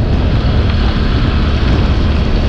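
Wind rushing over the microphone with a motor scooter's engine running underneath, a steady noise of riding along at speed.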